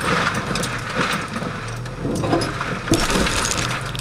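Toyota FJ Cruiser crawling along a rough dirt trail, heard from inside the cabin. Its engine runs low under a steady clatter of rattles, clinks and knocks from the body and loose items, with a sharp knock about three seconds in.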